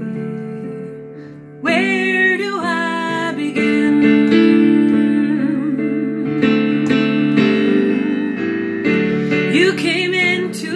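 A woman singing a slow song over held keyboard chords. The accompaniment plays alone and fades slightly at first, then her voice comes in about two seconds in and carries on through the rest.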